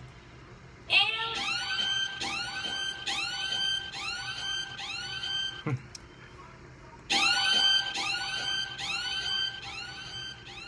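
Melody loop of a trap beat in progress, playing without drums: a run of short plucked notes, each sliding up into its pitch, about two a second. It plays through twice, the first pass ending in a brief falling sweep and a pause of about a second.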